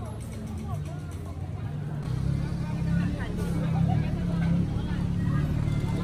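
Busy street ambience: the chatter of a passing crowd over a low vehicle engine rumble that grows louder about two seconds in.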